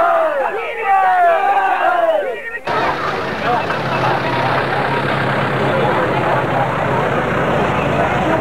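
Crowd of men shouting and cheering, many voices overlapping. About two and a half seconds in it cuts abruptly to a dense crowd babble with a steady low hum underneath.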